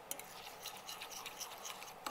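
A spoon stirring a wet, oily garlic-and-spice paste in a bowl: faint, irregular scraping and light clicks of the spoon against the bowl.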